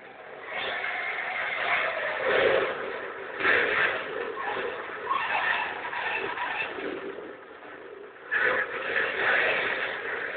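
A car engine running hard as the car is driven fast, heard through a dull, thin-sounding TV soundtrack. It fades a little around seven seconds in, then picks up sharply again after about eight seconds.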